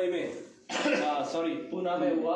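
A man's voice talking, broken by a short pause about half a second in.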